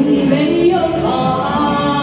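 A woman singing a Mandarin pop ballad into a handheld microphone, with backing music.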